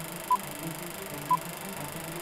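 Film-leader countdown beeps: a short, pure high beep once a second, twice here, over a low, steady hum.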